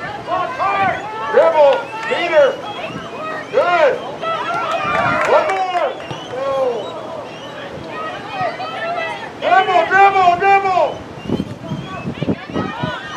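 Parents shouting from the sidelines during a soccer game, really loud: a string of high-pitched yelled calls one after another, with a louder run of calls near the end.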